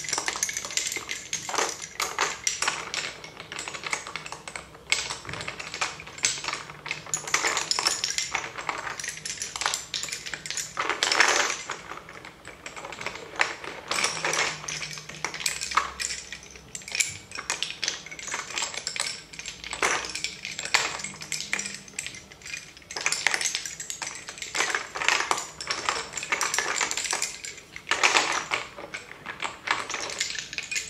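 Turned wooden lace bobbins clicking and clacking against one another in quick, irregular flurries as pairs are crossed and twisted on a bobbin-lace pillow.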